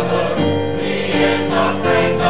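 A mixed church choir of men and women singing an anthem together in harmony, holding long notes over a musical accompaniment.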